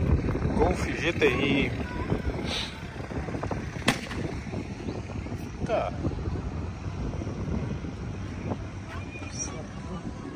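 Wind buffeting the microphone, with indistinct voices in the background and a single sharp click about four seconds in.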